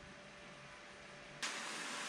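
Faint room tone, then about one and a half seconds in a steady hiss starts suddenly as the acetone-infused oxyhydrogen torch lights and burns.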